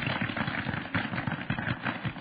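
A crowd applauding: many hands clapping in a dense, irregular patter that fades out just as the speech resumes.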